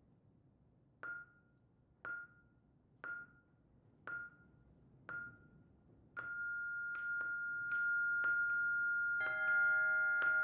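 Mallet percussion music: one high note struck about once a second, five times, each ringing briefly. From about six seconds the same pitch is held as a steady tone under quicker strikes, and near the end further notes join in a chord.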